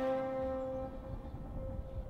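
Fiddle and banjo's final chord ringing out and fading at the end of an old-time tune, the higher note held longest as it dies away. A low rumble of outdoor background comes up beneath it as the chord fades.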